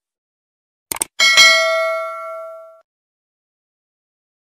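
Subscribe-button animation sound effect: two quick clicks about a second in, then a bell chime that rings out and fades over about a second and a half.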